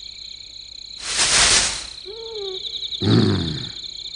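Cartoon night scene sound effects: crickets chirping steadily, a rushing whoosh about a second in, then a short wavering cry and a low growl from a fox-like beast.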